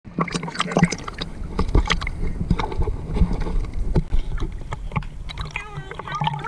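Pool water sloshing and splashing against a camera held at the water's surface, with many short sharp splashes and drips over a low rumble.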